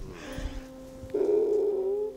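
Background music of held keyboard-pad tones, a steady low chord with a louder, slightly wavering note coming in about a second in.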